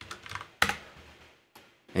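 A few separate keystrokes on a computer keyboard: sharp, unevenly spaced taps, the loudest about half a second in.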